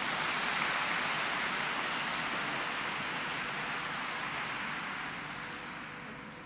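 Audience applauding after the music stops, a steady patter that slowly dies down near the end.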